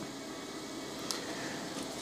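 Quiet, steady room tone in a small room, with one faint tick about a second in.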